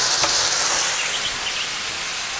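Steady sizzle of minced-meat lule kebabs frying in a pan greased with lamb tail fat.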